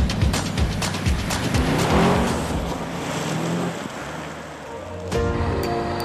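Background music with a beat, over which a car drives past: its engine and tyre noise swell about two seconds in, with a falling pitch, and then fade. Near the end the music changes to sustained tones.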